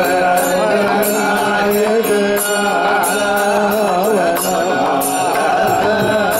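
Carnatic devotional bhajan singing over a steady held drone, with short metallic, cymbal-like strikes keeping a beat about twice a second.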